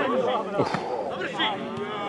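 Men's voices shouting long, drawn-out calls across a football pitch.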